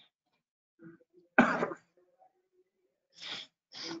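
A man coughing: one loud, sharp cough about a second and a half in, then two quieter short coughs near the end.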